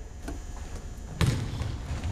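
A basketball hitting the hardwood gym floor a little after a second in: one sharp thud that echoes in the hall, after a fainter knock near the start.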